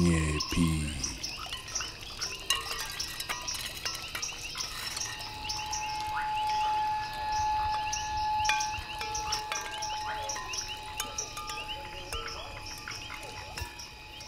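Sound-art texture of many quick high chirps and clicks over faint steady high tones, with a clear sustained tone held from about five to nine seconds in.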